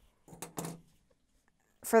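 Scissors snipping through a strand of acrylic yarn: a short, crisp cut about a third of a second in, followed by a second brief sound.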